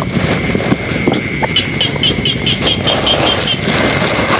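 Night insects chirping in a fast, even pulse of about five high chirps a second, with a thin steady high drone, over a constant rushing noise.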